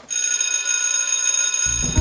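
Electric school bell ringing steadily for nearly two seconds.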